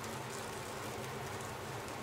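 Rack of lamb searing in clarified butter in a very hot frying pan: a steady sizzle.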